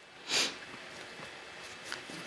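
A single short sniff through the nose about a third of a second in, followed by faint handling of tarot cards with a small tick near the end.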